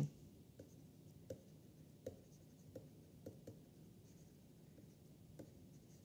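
A stylus writing by hand on a tablet: faint, irregular short taps and light scratches, roughly half a second to a second apart.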